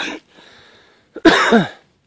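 A man coughs once, a loud harsh cough a little over a second in.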